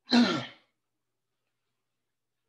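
A man clears his throat once: a short burst about half a second long, with a pitch that falls through it.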